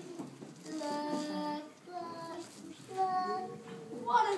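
A child's voice drawn out in three long, held notes, sung rather than spoken.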